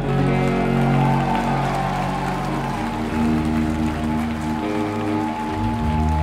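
Live rock band playing an instrumental stretch of a song: electric guitars and bass guitar holding sustained chords, which change about halfway through and again near the end.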